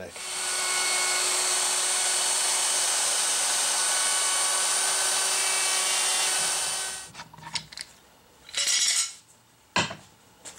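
Handheld wood router running at speed and cutting a P90 pickup cavity through a template into a wooden guitar body, a steady high whine with cutting noise. It is switched off about seven seconds in and winds down quickly, followed by a short scrape and a sharp knock.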